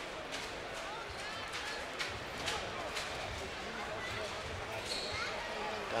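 A futsal ball being kicked and passed on a hard indoor court: several sharp knocks, with short squeaks of players' shoes on the sports floor, over a steady murmur of the crowd in the hall.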